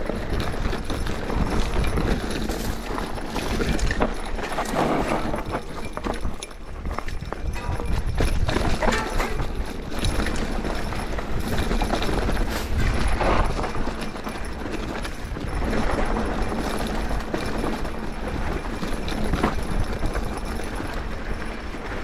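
Giant Trance Advanced Pro 29 full-suspension mountain bike descending rocky singletrack: tyres running over dirt and stones, with many irregular knocks and rattles from the bike as it hits rocks, over a steady low rumble.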